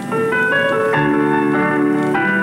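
Piano music from the film's score: held notes and chords that change every second or so.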